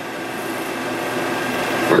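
Technicolor 8mm film-cartridge projector running with a steady mechanical whir and hiss, growing a little louder.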